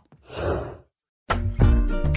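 A single breathy sigh, then a moment of dead silence, then music with plucked guitar starting about a second and a half in.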